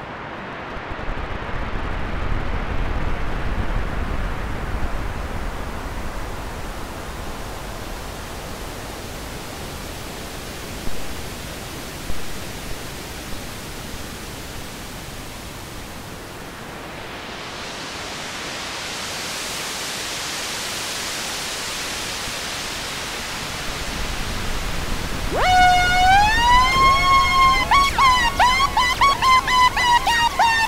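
Moog Model 15 synthesizer playing a wind-like filtered noise whose filter slowly opens to a bright hiss and closes again, with two soft thumps about eleven and twelve seconds in. Near the end a wavering, gliding synth tone comes in over it.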